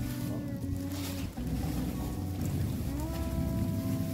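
Loose protein supplement powder sliding from a plastic tub into a clear plastic bag, the bag crinkling, under background music with long held notes.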